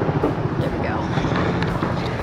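Mountain coaster cart rolling down its metal rail track, a steady low rumble, with wind on the microphone.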